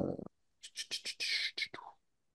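A hesitant spoken "uh", then faint whispered mumbling with small mouth clicks, as of a man muttering to himself while reading over his notes.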